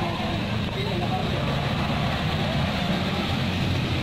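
A convoy of SUVs and cars driving past close by, a steady mix of engine and tyre noise on the road.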